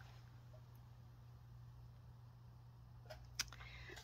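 Near silence: room tone with a low steady hum, and two faint clicks near the end.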